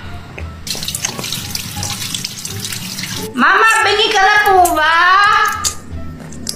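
Water running from a kitchen tap as an even hiss. A little past the middle, a person's voice comes in for about two and a half seconds, drawn out and rising and falling in pitch, louder than the water.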